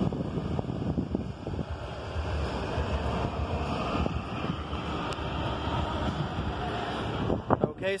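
A steady rush of air noise with a few faint clicks from the phone being handled.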